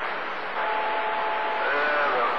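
CB radio receiver hissing with static while tuned to channel 28 skip between transmissions. Two steady whistle tones run through the middle, and a faint distorted voice comes up near the end.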